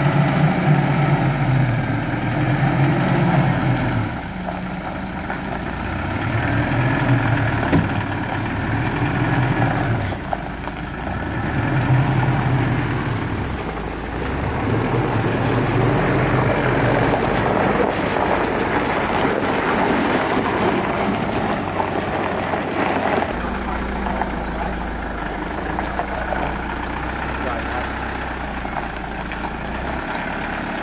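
Mitsubishi Pajero engine running as it tows a boat trailer, with a steady low hum in the second half. Indistinct voices can be heard along with it.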